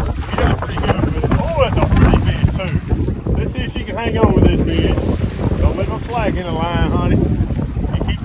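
Wind buffeting the microphone over a boat on a fast river current, a steady rumble, with indistinct voices breaking in now and then.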